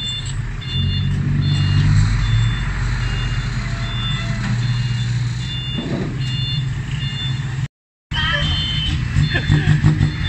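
Six-wheel dump truck's diesel engine running steadily while an electronic warning beeper sounds in short, evenly spaced beeps, about one a second. The sound breaks off briefly near the end.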